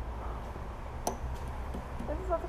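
A steady low rumble with a single sharp click about halfway through.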